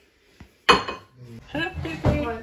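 One sharp clink of a metal knife against a plate as a cake is cut, with a short ring, about two thirds of a second in. A voice follows near the end.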